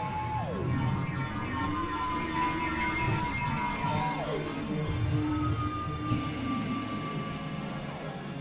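Layered experimental electronic music: held tones with two steep downward pitch glides, one near the start and one about halfway through, over a dense low drone.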